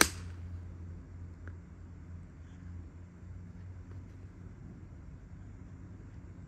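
A seven iron striking a golf ball off the tee: one sharp, crisp click at the very start. A low steady hum carries on underneath afterwards.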